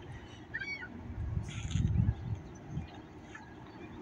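A bird calls in short arching notes about half a second in. Under it runs an uneven low rumble that swells loudest about two seconds in.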